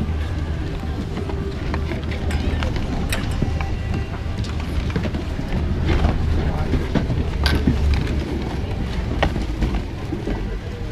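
Ski-lift loading area: a steady low rumble with scattered sharp clacks of skis and poles as skiers shuffle forward, over indistinct voices and music.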